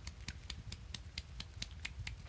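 A quick, even run of light, sharp clicks, about four or five a second, over a low steady hum.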